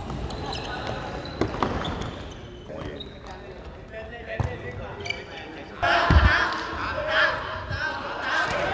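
Futsal ball being kicked and bouncing on a wooden indoor court, a few sharp thuds with the loudest about six seconds in, echoing in a large hall. Players shout and call to each other, busiest in the second half.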